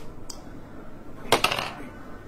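An eight-sided die rolled onto a table for a damage roll: a short clatter of several quick clicks about a second and a half in.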